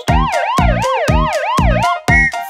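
Police siren sound effect, a fast rising-and-falling wail cycling about three times a second, over the steady beat of a children's song.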